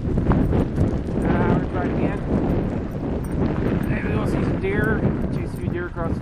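Bicycle rolling fast over a rough dirt track with a continuous rumble and rattle, and wind buffeting the helmet-mounted microphone. A few short bits of the rider's voice come through.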